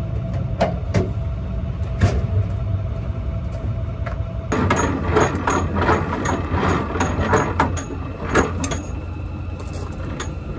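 Pickup truck engine idling, with a few sharp clicks. About halfway through, the idling drops away and a gooseneck trailer's jack crank is turned by hand, with quick, uneven metallic clicking and rattling from the jack.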